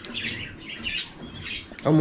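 Small cage birds chirping in the background: scattered short, high-pitched chirps, with a man's voice beginning near the end.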